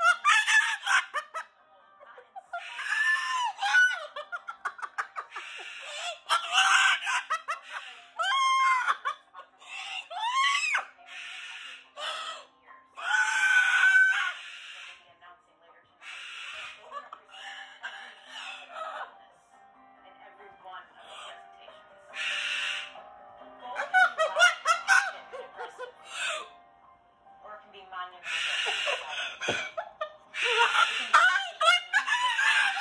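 Moluccan cockatoo screaming again and again: a string of loud, harsh screeches, some gliding up and down in pitch, with short pauses between them.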